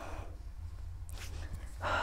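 Quiet room with a low steady hum; a woman's breathing while she exercises, with a faint breath about a second in and a louder breath near the end.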